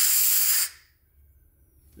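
Compressed air hissing through a just-opened valve into a filter-regulator as the air line fills, a loud, high hiss that stops less than a second in as the line comes up to pressure.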